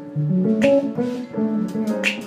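Live jazz: a plucked bass solo line of quick, stepping notes, with drum cymbal strokes about every second and a half.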